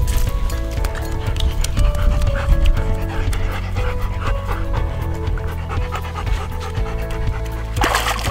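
Golden retriever panting in quick, regular breaths, about three a second, over background music with held notes. A louder burst of noise comes near the end.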